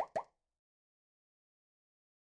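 A man's voice finishing a short spoken phrase in the first quarter second, then dead silence.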